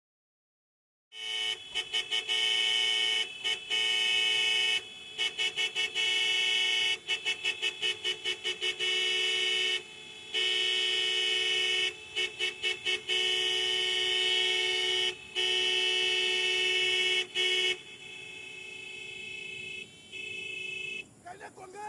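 A car horn honking over and over, starting about a second in: long held blasts broken up by runs of rapid short toots. It stops near the end, leaving a fainter steady tone.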